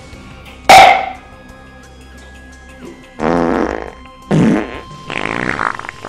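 Background music under a sudden loud burst about a second in, followed by three shorter pitched blasts, each under a second long, in the second half.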